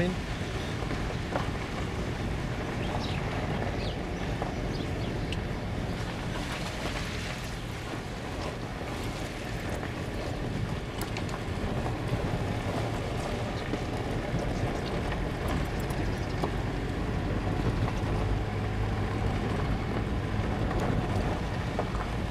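Steady road noise inside a moving car's cabin: tyres rolling on a gravel road, with the engine running underneath.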